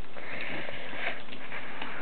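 Plastic Transformers toy being handled and transformed by hand: a few faint clicks of the parts, with a soft hiss lasting about a second near the start.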